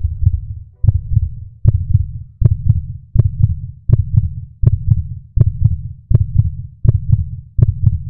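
Heartbeat sound effect: a deep double thump repeating about every three-quarters of a second, each beat topped by a sharp click.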